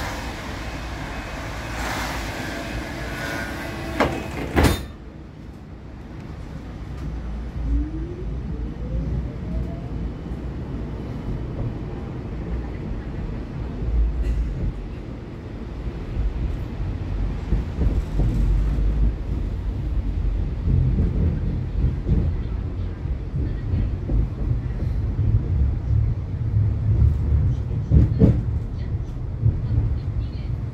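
Siemens Combino tram heard from inside the passenger area: the doors shut with a sharp knock about four and a half seconds in, cutting off the street noise. The traction motors then whine, rising in pitch as the tram pulls away, and the rumble of wheels on rail builds as it gathers speed.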